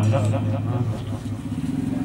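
A man's voice over a loudspeaker system trails off in the first half-second, leaving a steady low hum through the pause.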